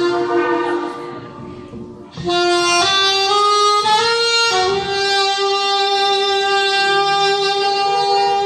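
Alto saxophone playing solo melody: a held note that fades about a second in, then after a short gap a few notes stepping upward and a long held note through the second half.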